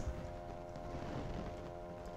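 Quiet background music of soft, held notes.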